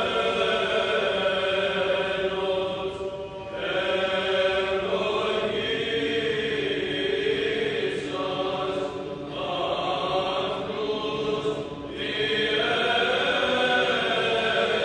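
Male choir singing Byzantine chant: long, sustained sung phrases broken by brief pauses about three times.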